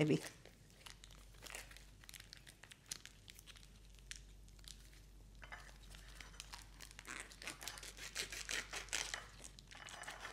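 Clear plastic wrapping crinkling and rustling as it is peeled off a block of cheese by gloved hands: irregular small crackles, busier in the second half.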